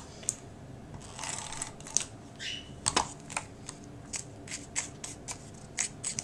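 Paper and small craft supplies being handled on a cutting mat: soft paper rustling with a scattered series of small clicks and taps.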